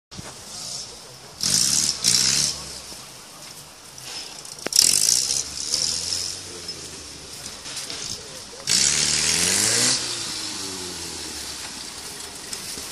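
Off-road trial vehicle's engine revving hard in three short bursts of about a second each, with indistinct voices around it.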